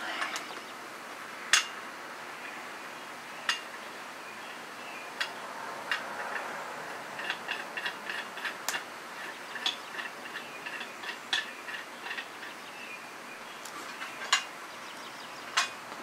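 Small metal clicks and clinks from a Crovel shovel's steel parts as a spare point is handled and fitted onto the handle. The ticks are scattered, coming in a quicker run in the middle.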